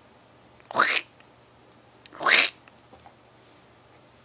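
A baby's voice: two short, loud squeals about a second apart.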